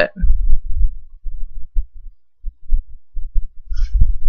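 Irregular low-pitched thumps and rumbles, some sharp and some lasting a fraction of a second, with no higher-pitched sound over them.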